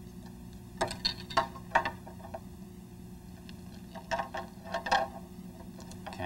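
Plastic syringes joined by latex tubing being handled and set on a tabletop: a few quick clicks and taps about a second in, and again around four to five seconds in, over a steady low hum.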